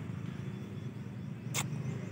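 Low, steady background rumble, with one sharp click about one and a half seconds in.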